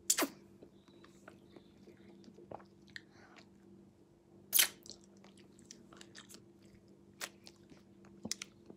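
Biting and chewing on a frozen blueberry ice lolly, crunching the ice. There are two louder crunches, one just after the start and one about four and a half seconds in, with small clicks between.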